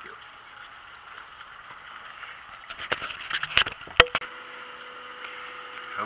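Faint background hiss, then a few knocks and rustles of the camera being handled as it is switched off about three seconds in. A sharp click at four seconds marks a cut between recordings, followed by a faint steady hum.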